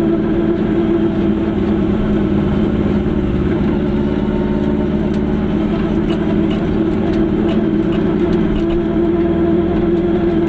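Car engine running at a steady low speed, heard from inside the cabin as a constant low drone with road noise, and a few faint ticks and rattles.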